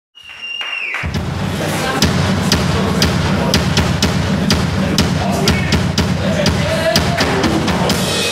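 Rock band playing live: drum kit hits with amplified guitars and bass. It opens with a brief steady high tone in the first second before the band comes in.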